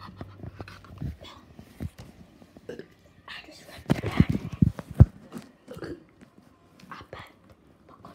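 Loud, open-mouthed chewing of crunchy lettuce close to the phone's microphone: irregular wet crunches and lip smacks, with a sharp knock about five seconds in as the loudest sound.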